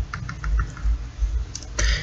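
A quick, even run of about six light clicks in the first second, then a short rush of noise near the end, over a steady low hum.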